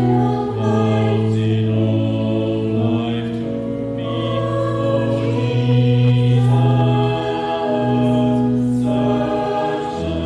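A small mixed choir singing slow, sustained chords, the notes held and changing every second or two.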